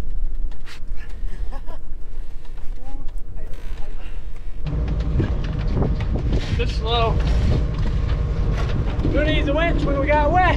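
Wind buffeting the microphone: a steady low rumble that jumps abruptly louder about halfway through.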